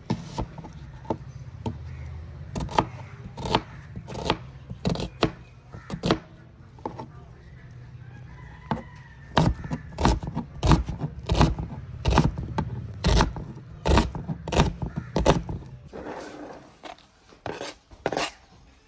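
A wide-bladed kitchen knife chopping an onion finely on a plastic cutting board: a run of sharp knocks of the blade on the board, irregular and spaced out at first, then quicker at about two or three a second in the second half.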